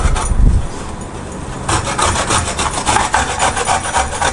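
Cauliflower being grated on a stainless-steel box grater: a quick run of rasping strokes, with a dull bump near the start and a lull about a second in before the strokes pick up again.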